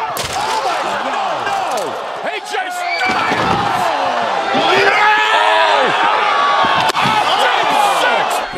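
Wrestling impacts: a few sharp slams of bodies hitting a hard surface, near the start, about two and a half seconds in and near the end, under loud excited shouting voices.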